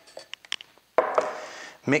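A few light clicks as a metal paint tin is handled, then a single knock about a second in as the tin is set down on the wooden table, fading quickly.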